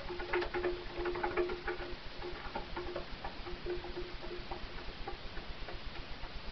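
Domestic pigeons cooing, a low broken hum that is strongest in the first two seconds, with a run of quick light ticks over it.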